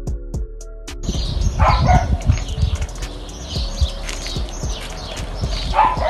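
Electronic background music for about the first second, then it cuts off to outdoor sound: a low, buffeting rumble on the microphone with short animal sounds among it.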